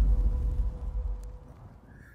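Low rumbling tail of an explosion-style boom sound effect from an animated logo intro, dying away over about two seconds, with a faint steady tone beneath it.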